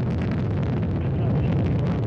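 Soyuz rocket's first stage, four strap-on boosters and a core engine, running at full thrust during ascent: a loud, steady low rumble with a crackling edge.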